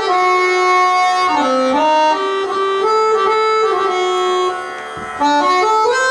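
Harmonium playing Raga Ahir Bhairav in a western chord style, with several reed notes held together and moving to a new chord every half second to second. The sound drops briefly quieter about four and a half seconds in, then swells back.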